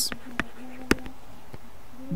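Light clicks and taps of a stylus on a drawing tablet while a line is written, with one sharper click near the middle, over a faint low hum.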